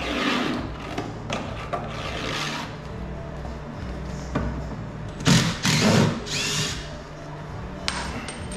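Power drill-driver running in short bursts, loudest and longest about five seconds in, while working on an old door's frame.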